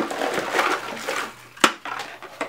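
Rummaging through a bin of empty candle and wax containers: light rustling and handling noise, with one sharp knock of a container near the end.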